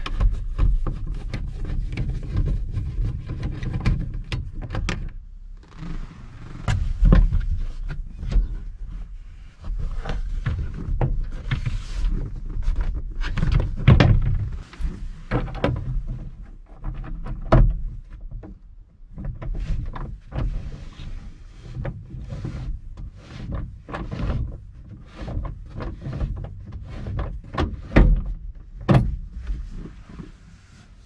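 Hands working on the inside of a 1973 GMC truck's driver door: a screwdriver turning out the door-panel screws, with many irregular knocks, clicks and scrapes of tool, trim and door fittings.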